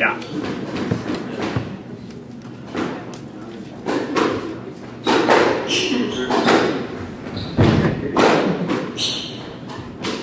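Squash rally: a squash ball struck by racquets and rebounding off the court walls, sharp echoing hits about once a second.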